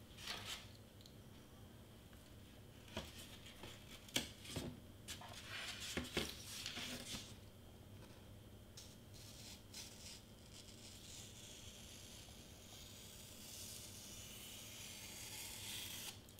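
Faint sounds of a pen-style craft knife cutting foam board on a cutting mat: a few scrapes and knocks as the board is handled and shifted in the first seven seconds, then a long steady scratchy cut drawn through the board near the end.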